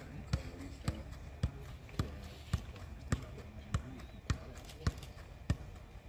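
A football being juggled on the foot in kick-ups, each touch a sharp thud, about two a second in an even rhythm.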